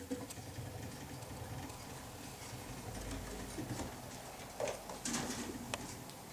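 Chinchillas hopping and scampering over wooden shelves and a wooden floor: a light patter of paws and claws with scattered clicks and taps, and a few louder knocks about five seconds in.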